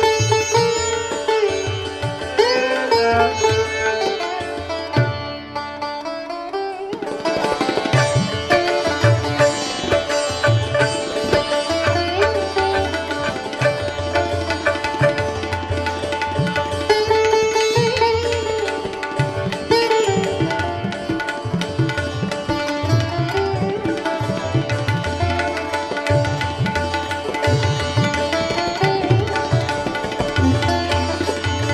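Sitar and tabla playing with a bowed kamancheh in a Persian-Indian classical improvisation. The low drum strokes drop away briefly about five seconds in, and the full ensemble comes back in about seven seconds in.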